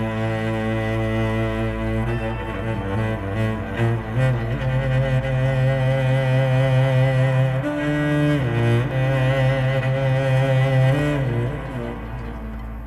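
Cello bowed in a slow solo melody of long held notes over a low sustained note, sliding down between notes twice in the second half.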